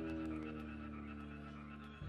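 A live rock band's held chord ringing out and slowly fading.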